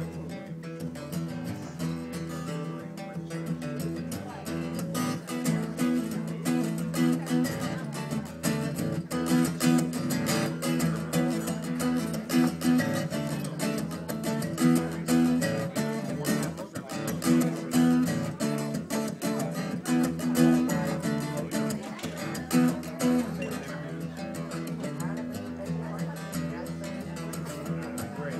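Acoustic guitar played solo, picked and strummed in a steady rhythm, with no singing over it.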